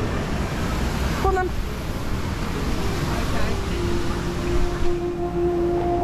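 Outdoor ambient noise with low rumble on the microphone and a brief voice about a second in; a steady hum-like tone starts about halfway through and holds.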